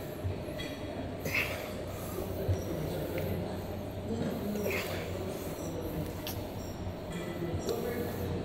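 Gym room noise: a steady low hum, with a few short breaths or distant voices and a couple of light clicks in the second half.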